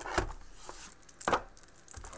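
A hinged cardboard card storage box handled and knocked against the table: two sharp knocks about a second apart, with light rustling between.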